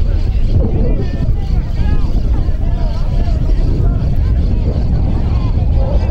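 Wind buffeting the camera microphone as a steady low rumble, with distant shouts and calls from rugby players and spectators.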